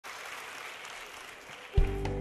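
Audience applause dying down, then, near the end, the studio orchestra comes in loudly with the song's opening sustained chord.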